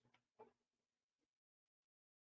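Near silence, with a short cluster of faint clicks and knocks in the first second and a half and two tiny ticks after it.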